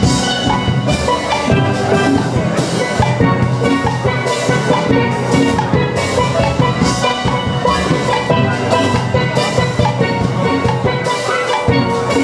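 A steel band playing steel pans in a lively ensemble melody, with a drum kit keeping a steady beat underneath.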